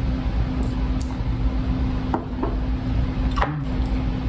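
People sipping hot tea from ceramic mugs and eating, with a few small clicks and mouth sounds over a steady low hum in the room.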